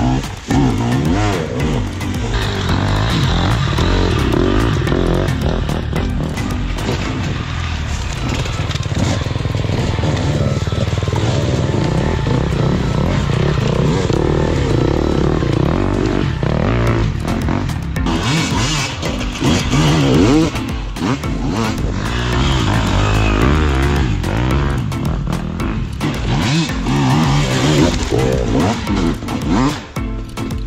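Dirt bike engines revving up and down, pitch rising and falling repeatedly, with music playing over them.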